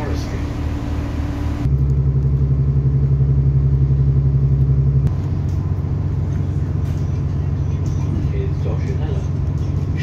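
Diesel engine of an Irish Rail 29000 class railcar heard from inside the carriage as the train pulls away: the low engine drone steps up louder about one and a half seconds in, then settles to a slightly quieter steady drone about five seconds in as the train gets moving.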